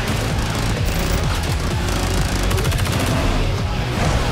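Bursts of rapid automatic gunfire, many shots a second, over loud film music with a heavy bass.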